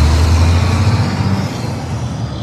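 Heavy truck engine rumbling steadily, a deep low drone with hiss on top, used as a radio station sound effect; it begins to fade out near the end.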